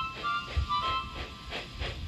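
Cartoon steam-locomotive sound effects over music, played through a TV speaker: brief held tones, then rhythmic hissing steam chuffs about three a second.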